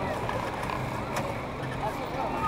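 Car engine running at slow parade pace, under the chatter of spectators' voices, with one sharp click about a second in.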